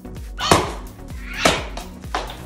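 Background music with a steady beat, with two loud swats about a second apart as a stick is swung at a hanging paper piñata.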